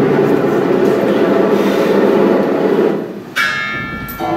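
Free-improvised drum kit and prepared piano: a dense, rumbling roll on the drums that thins out about three-quarters of the way in. A sudden ringing, bell-like metallic strike then sounds and hangs on.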